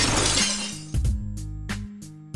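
A breaking-glass crash sound effect that fades away over the first second. Background music with a steady beat plays under it and carries on after.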